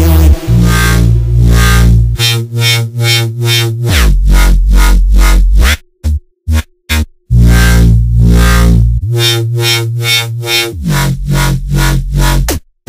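Dubstep drop: heavy synthesizer bass notes that change pitch every second or two, chopped into a fast stuttering rhythm, with a brief break of silent gaps and short hits about six seconds in before the bass returns.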